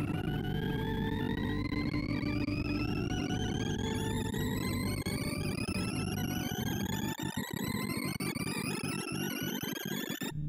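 Synthesized tones from a sorting-algorithm visualizer, whose pitch follows the value of each array element being read or written. As an in-place merge sort works through ascending runs of numbers, the tone climbs in one steady upward sweep, over a dense buzzing lower layer that breaks up into stutters in the last few seconds.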